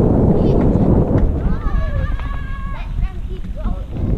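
Wind on the microphone and tyre rumble of a mountain bike riding a dirt trail, easing off about halfway, with a high voice calling out in a long, drawn-out cry that falls in pitch, then a few short calls near the end.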